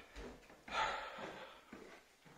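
A man's breath, a sharp noisy exhale through a surgical face mask, about two-thirds of a second in and lasting under a second, with faint knocks from moving on the stairs.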